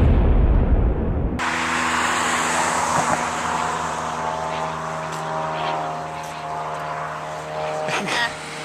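A loud, low rushing noise for the first second and a half, then a steady engine-like drone with several held, unchanging tones over a light background hiss.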